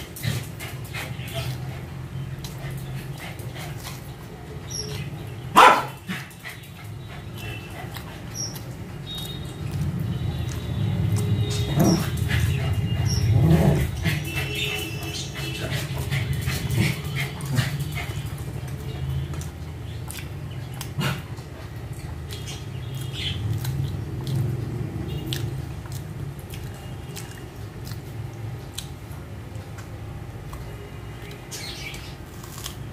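A small dog barking at intervals, the sharpest and loudest bark about five and a half seconds in.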